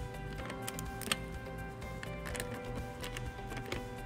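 Ratchet and socket tightening a nut on a steel mounting bracket: irregular sharp clicks, a few each second, over steady background music.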